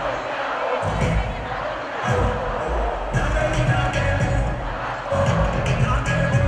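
Live concert sound: music over a loudspeaker system with a heavy bass beat that drops out for moments, under the noise of a large crowd.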